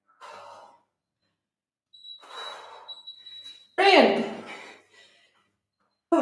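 A woman breathing hard, out of breath after a set of dumbbell goblet squats: a short breath, then a longer noisy exhale, then a loud voiced gasp or sigh about four seconds in whose pitch drops and rises again. A steady high beep lasting about two seconds sounds under the breathing.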